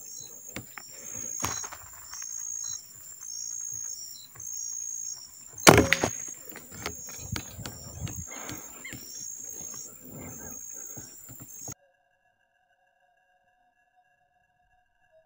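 Outdoor ambience with an insect chirping in a steady repeated high pulse, about one and a half chirps a second, over scattered light handling clicks. A single sharp, loud knock about six seconds in is the loudest sound, and the sound cuts out abruptly near the end.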